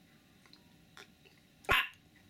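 A person drinking juice from a glass: faint small swallowing clicks, then one short, sharp burst near the end.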